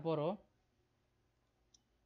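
A short spoken word at the start, then near silence broken by one faint, short click near the end, typical of a computer mouse button.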